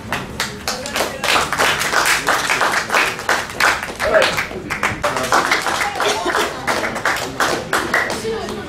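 A small group of people clapping in a fast, uneven patter that swells about a second in, with voices calling out over it.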